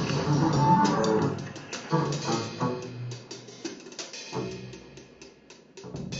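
Double bass bowed in a free-improvised passage: low, grainy sustained tones mixed with sharp clicks and scrapes. The playing is dense at first, then thins out and grows quieter towards the end.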